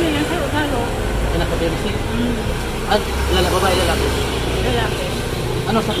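Indistinct talking, with the low rumble of a motor vehicle's engine passing in the street from about a second in until near the end.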